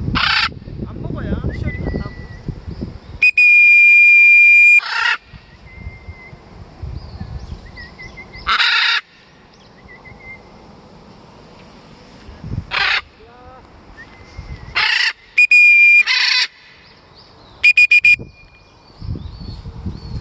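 Harsh blue-and-gold macaw screeches, about six short ones spread through, alternating with loud, steady, high whistle blasts. Two of the blasts are held for over a second and the last comes as a few quick short toots. Wind rumbles on the microphone near the start and end.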